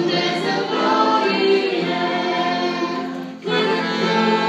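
A family group singing a church song together in harmony, holding long notes, with a brief break between phrases about three and a half seconds in.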